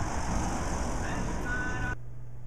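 Street traffic noise: a road vehicle going by, heard as an even rushing noise with low rumble. A brief high-pitched tone comes in near the end.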